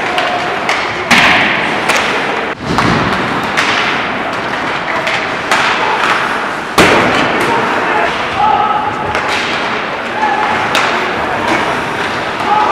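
Ice hockey in play: repeated sharp knocks of sticks and puck, including puck and bodies against the boards, over a steady rink noise with distant voices. The two loudest knocks come about a second in and at about seven seconds.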